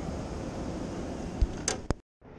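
Steady outdoor background noise on a handheld camera's microphone, with a dull thump and a couple of short knocks or clicks near the end from handling. The sound then cuts off suddenly.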